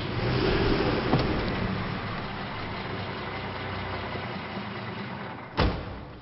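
Vintage car's engine running as the car drives through an underground garage, loudest in the first second and then slowly fading. A single sharp thump near the end.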